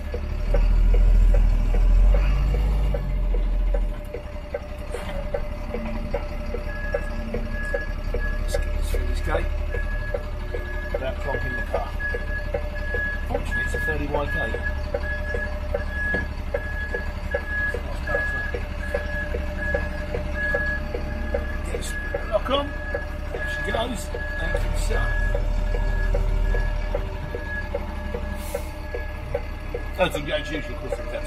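Inside a lorry cab: the diesel engine rumbles low as the truck reverses, and from about seven seconds in the reversing alarm gives a steady series of evenly spaced beeps. The engine's rumble swells for the first few seconds and again briefly near the end.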